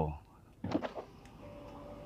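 Power window motor of a Lamborghini Urus running as the driver's window lowers, a faint steady whine that starts about a second and a half in.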